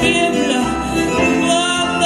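A tango played live by a woman singer with an ensemble of piano, double bass, violin, bandoneón and guitar.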